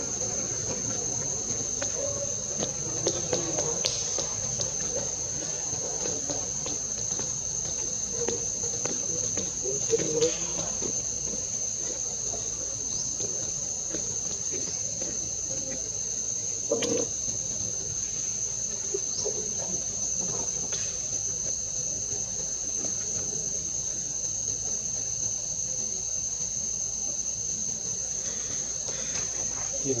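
Steady high-pitched drone of an insect chorus, with a few faint short clicks and knocks scattered through, the sharpest about 17 seconds in.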